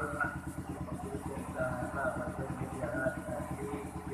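A small engine running steadily at idle, a fast, even low throb under soft, intermittent speech.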